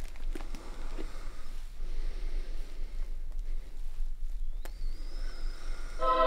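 Room tone with a steady low electrical hum, a few faint clicks and rustles of small handling movements, and one sharp click late on. A thin high tone rises faintly near the end.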